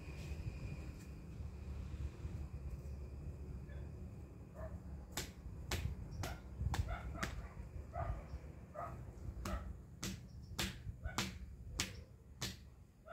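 A pair of plastic rain boots being knocked and slapped about, a quick irregular run of sharp slaps, roughly two a second, starting about four and a half seconds in, each with a short hollow ring.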